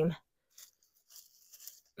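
Near silence with faint, scattered scratchy rustles of gloved hands working loose soil and mulch around a replanted heuchera.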